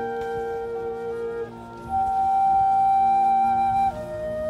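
Marching band playing a slow passage of long held chords; a high sustained note comes in about two seconds in, louder than the rest, and drops away just before the end.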